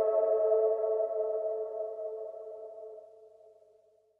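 The song's final sustained synthesizer chord, held and fading out steadily, its upper notes dying first, until it dies away near the end.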